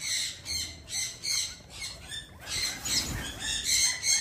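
Birds chirping in short, high calls, several a second.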